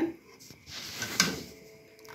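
A metal spoon scraping in a steaming pot of harira, with one sharp knock about a second in.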